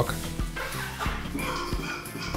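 Air being sucked by mouth out of a plastic freezer bag of vegetables through a small hole, a faint squeaky drawing sound, over soft background music.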